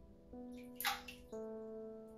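Bathwater sloshing briefly in a bathtub about a second in, over soft background music with sustained notes.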